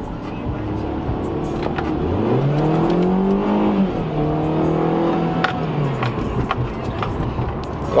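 Mini Cooper Countryman (R60) four-cylinder engine under full-throttle acceleration, heard from inside the cabin. The engine note climbs for about two seconds, drops at an upshift about halfway through, climbs again, then falls away near the end.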